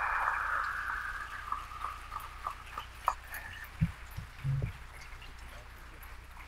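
Audience applause dying away over the first second or two, leaving a few scattered single claps, then a couple of low thumps about four seconds in.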